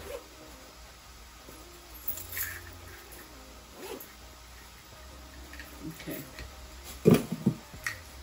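Handling of a small zippered fabric wallet and a leather purse: scattered soft rustles and small clicks, with one short louder knock about seven seconds in.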